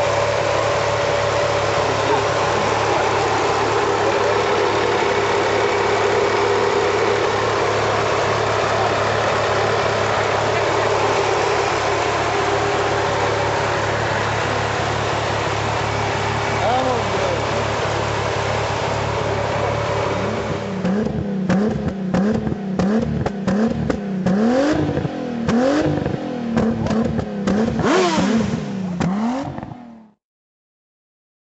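Turbocharged VR6 engine of a VW Golf idling steadily with the bonnet open, then revved in a quick series of short blips over the last third, each rising and falling in pitch.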